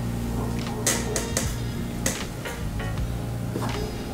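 Background music with steady bass notes, with several short sharp noises over it.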